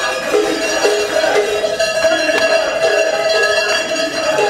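Many large Swiss cowbells (Treicheln) ringing together in a continuous clanging, with a pulse about twice a second as they swing.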